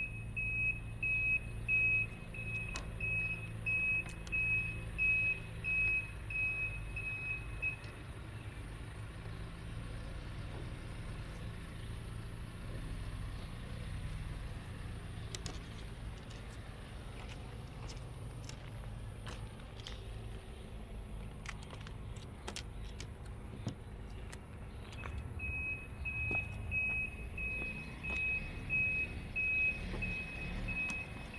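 A vehicle's reversing alarm beeps steadily, about one and a half beeps a second, over a low engine rumble. The beeping stops about eight seconds in and starts again near the end, with scattered faint clicks in between.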